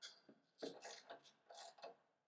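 Faint metallic clicking in a few short runs from a 7/16 wrench working the nut on a rowing shell's oarlock, loosening it so the oarlock's height can be adjusted.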